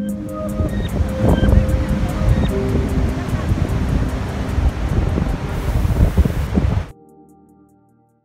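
Wind buffeting the microphone in uneven gusts, with quiet background music beneath it. Near the end the wind noise cuts off suddenly, leaving only the music fading out.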